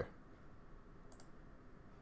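A single faint computer mouse click about a second in, over low steady room hiss.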